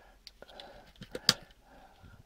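A few sharp plastic clicks as an AA cell is pulled out of a smart charger's spring-contact slot and handled, the loudest about a second and a quarter in.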